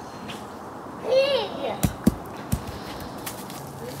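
A single short spoken 'yeah', then several short sharp knocks over quiet outdoor background.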